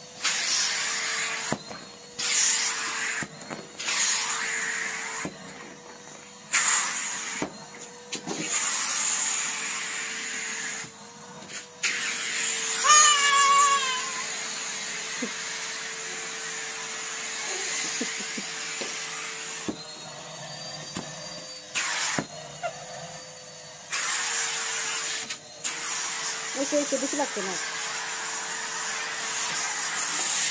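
Henry cylinder vacuum cleaner running, with a steady motor whine under a rushing suction noise that keeps cutting in and dropping away as the nozzle works over bedding and carpet. A child's high squeal comes about halfway through.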